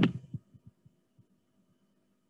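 A woman's voice trailing off at the very start, then a few faint, short low thumps in the first second and near silence with a faint steady hum.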